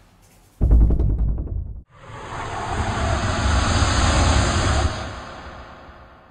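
Outro sound effects over the end card. A deep boom hits about half a second in and cuts off abruptly. Then a wash of noise swells up and fades away near the end.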